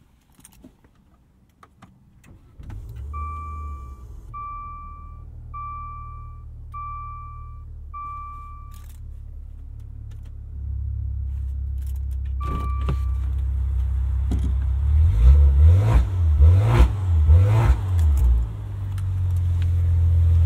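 Maserati Levante GranSport's twin-turbo V6 starting and idling, heard from the driver's seat, while the dashboard chime beeps five times and then once more. The idle steps up about halfway through, followed by several quick throttle blips that rise and fall.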